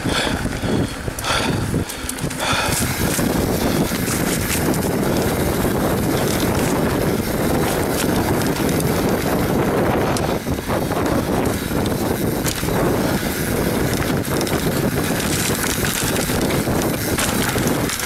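YT Capra enduro mountain bike riding a dirt trail: steady tyre and trail noise with a scatter of small clicks and rattles from the bike over bumps, and wind buffeting the camera microphone.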